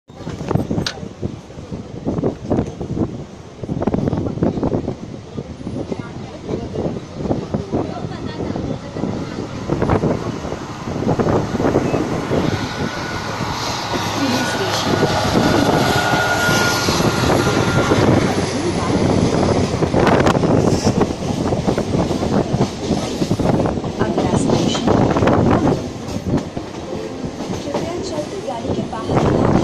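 Suburban EMU electric local train running, heard from its open doorway: rumble and an irregular clickety-clack of wheels over rail joints, with wind rush. It grows louder about halfway through as an express train's coaches run alongside on the next track, and a thin steady whine is held for a few seconds midway.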